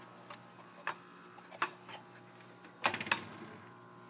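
A few light clicks, then a quick cluster of louder clicks about three seconds in, from a hand handling the controls of a Tandberg 3000X reel-to-reel tape deck, over a low steady hum.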